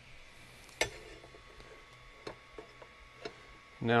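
A few light clicks and ticks of a hand-held square knocking against an Ender 3 V2's aluminium frame rails as it is set in place, the sharpest about a second in.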